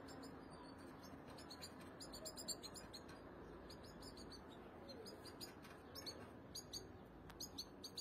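European goldfinches twittering faintly: quick clusters of short, high, falling chirps, busiest about two seconds in and again near the end, over faint steady background noise.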